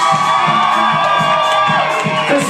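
A live band playing loudly, with one long held high note over the rest of the band, and a crowd cheering and whooping over the music.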